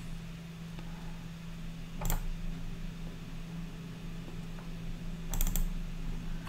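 Clicks from a computer being worked at the desk: one click about two seconds in, then a quick cluster of three or four near the end, over a low steady hum.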